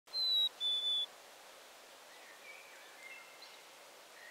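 A bird whistles two clear notes in the first second, the second a little lower than the first. Then comes only a faint outdoor hiss with a few soft, distant chirps.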